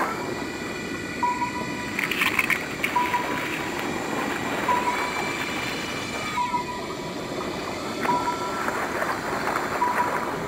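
Quiet outro of an electronic dubstep track after the beat cuts out: a steady noisy ambient bed with a short high beep repeating about every one and a half to two seconds, and held higher tones, one of which slides down about six and a half seconds in.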